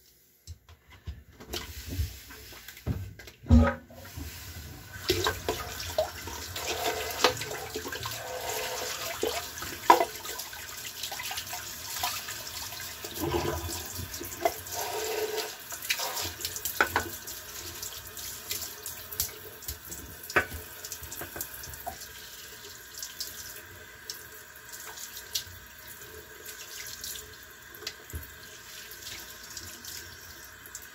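A tap running into a bathroom sink, with irregular splashing as water is scooped and rinsed after a wet shave. A sharp knock comes about three and a half seconds in.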